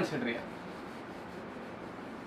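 Whiteboard duster rubbing across a whiteboard as it is wiped clean, a steady, fairly quiet scrubbing.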